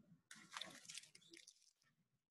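Near silence, with a faint scratchy noise lasting about a second shortly after the start.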